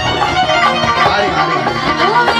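A live band playing an instrumental passage of a Hindi devotional bhajan, with sustained melody lines over the accompaniment.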